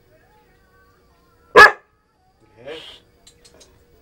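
A dog barks once, short and loud, about one and a half seconds in; a fainter short sound follows about a second later.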